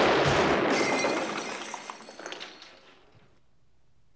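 A gunshot cuts off the music, followed by breaking glass and debris clattering down, dying away over about three seconds.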